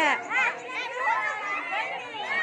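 Overlapping chatter of several girls' high voices talking and exclaiming at once.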